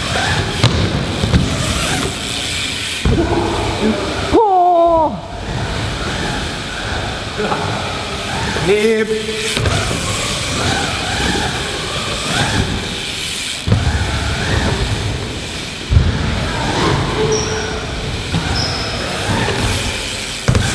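BMX bike tyres rolling and carving around a skatepark bowl in a large indoor hall, a steady rolling noise with a few sharp knocks. Riders shout twice near the middle.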